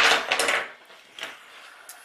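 Handling noise of a multimeter and its test leads being picked up off a wooden workbench: a rattling clatter at the start, then a sharp click about a second in and a fainter one near the end.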